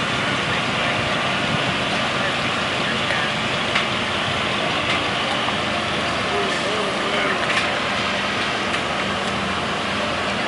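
Parade float's engine running steadily with a low, even hum while its steel frame is raised, and a few faint clicks.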